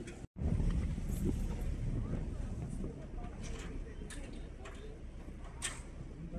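Outdoor street ambience: a steady low rumble of wind on the microphone with a few faint clicks scattered through it, after a brief dropout near the start.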